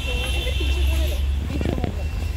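Background voices of people talking over a steady low rumble.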